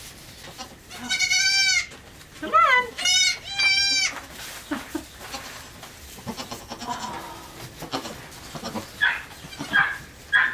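Goats bleating: four loud, high-pitched bleats in quick succession in the first half, one bending in pitch, then fainter bleats and shuffling through straw toward the end.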